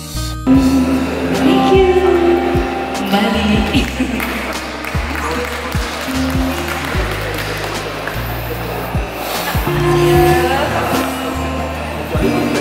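Live music through a small PA: a woman singing into a microphone over acoustic guitar, with sustained bass notes and a recurring low beat underneath.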